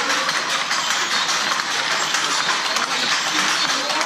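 Wooden hand looms clacking in a busy weaving hall: a dense run of small knocks and clicks over a steady din, with faint voices in the background and a short laugh at the start.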